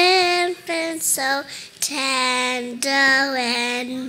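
A young child singing solo into a microphone, holding several long, wavering notes with short breaks between them.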